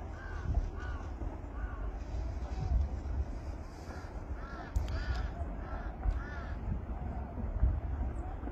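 Crows cawing, a run of short harsh caws near the start and another run of about five caws a little after halfway, over a steady low rumble.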